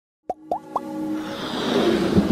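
Three quick rising electronic bloops in under half a second, then held synth notes under a swell that grows steadily louder: the build-up of a logo-intro music sting.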